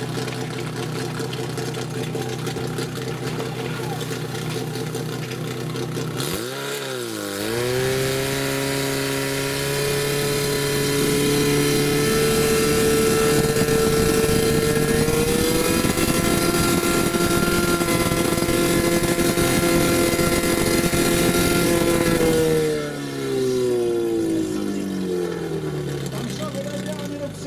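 Portable fire pump engine idling, then revved up after a brief dip in pitch and held at high, steady revs while pumping water to the hose lines. Near the end it drops back down toward idle.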